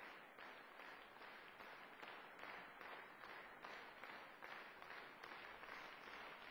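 Faint, steady audience applause: many hands clapping.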